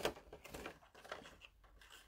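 Scissors cutting through cardstock: a sharp snip at the start, then a few faint blade clicks and paper rustles.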